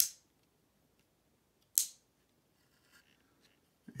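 Two sharp plastic clicks about two seconds apart as the action figure's geared arm is handled, then a few faint ticks near the end.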